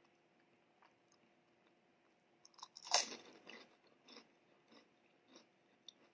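Close-miked chewing of a crunchy snack in a closed mouth: small wet clicks at first, then a loud crunch about three seconds in, followed by a steady run of softer chews about every half second.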